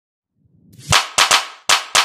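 Intro-jingle percussion: sharp, clap-like hits in a quick, uneven rhythm. Five strike in about the last second, each dying away fast.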